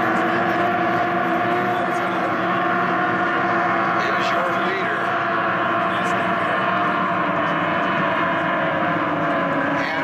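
Outboard engines of SST 60 tunnel-hull race boats running flat out, a steady drone made of several pitches layered together.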